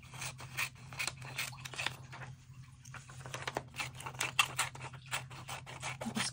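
Scissors snipping through glossy magazine paper in a quick, uneven series of cuts, with a short pause in the middle.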